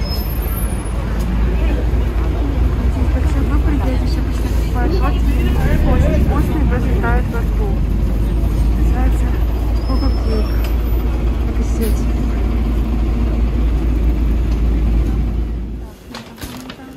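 Busy city street ambience: a steady, loud low traffic rumble with the indistinct chatter of passers-by.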